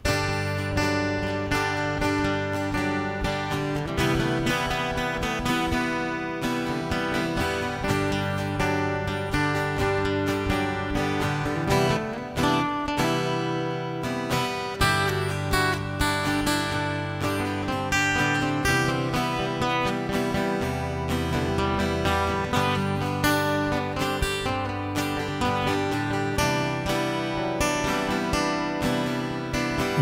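Acoustic-electric guitar strummed in a steady rhythm: the instrumental intro of a song, with chords changing every few seconds.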